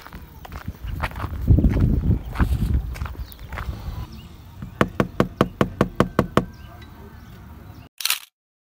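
Footsteps on a dirt road with low rumbling on the microphone, then about halfway through a quick, even run of about ten sharp clicks, roughly six a second.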